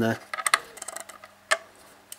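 Small clicks and taps of a plastic Wi-Fi antenna being fitted onto the screw-on connector of a MiniX Neo X7 media box, with one sharper click about a second and a half in.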